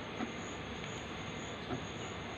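Fingers pressing on a plastic ice-cube tray to loosen the ice, giving a couple of faint clicks, over a steady hiss with a thin high whine.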